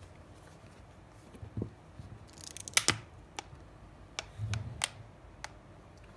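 Vintage Rolex 60.01.2 watch box being handled and its hinged lid opened: a series of sharp clicks and light knocks, the loudest about three seconds in, with a brief rustle just before it. The box gives a slight click when opened, put down to its age.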